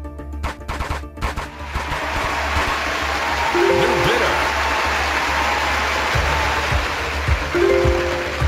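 Online auction site's background music. A few sharp pops come in the first second, then a loud, steady hiss-like sound effect runs to the end, together with confetti bursting across the screen as a bid is placed. Short chime-like tones sound about four seconds in and again at the end.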